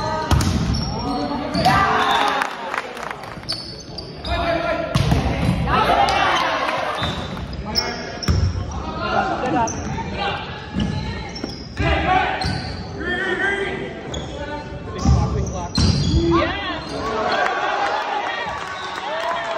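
A volleyball rally in a gym: the ball struck hard several times, a few seconds apart, by spikes, digs and sets, under the shouts of players and spectators echoing in the hall.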